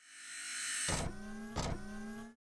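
Sound effect for an animated logo ident: a high whoosh that builds, then two sharp hits about 0.7 s apart, over a low tone that slowly rises in pitch.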